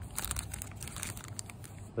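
Small clear zip-lock plastic bag crinkling in the hands, a run of quick, irregular crackles as it is turned over.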